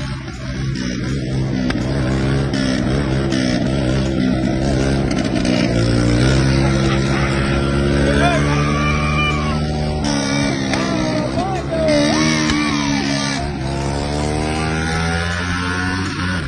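Small motorcycle engine running under throttle, its pitch climbing near the end as it revs up.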